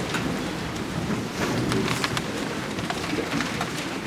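Congregation rustling and shuffling: an even crackling noise with scattered small clicks.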